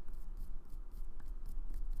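Faint rustling with small irregular ticks, as of light handling, over a steady low hum.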